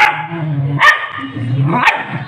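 Dog barking repeatedly, three sharp barks about a second apart.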